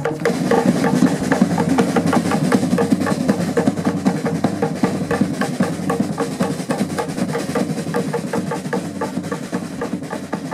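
Fast Polynesian drumming: a rapid, dense, unbroken run of drum strikes at a steady tempo.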